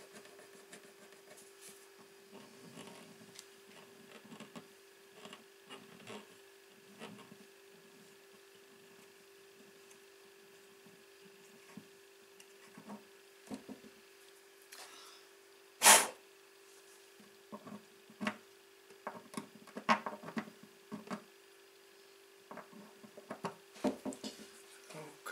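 Hands working at the bridge and bridge pins of an acoustic guitar: scattered small clicks and scrapes, with one sharp, loud click about two-thirds of the way through and a run of clicks soon after, under a steady faint hum.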